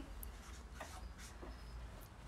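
Faint scratching of a pen writing on paper, in a few short strokes over a low steady hum.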